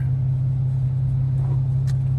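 Steady low rumble of a car heard from inside its cabin while it crawls in stop-and-go traffic, with a small tick near the end.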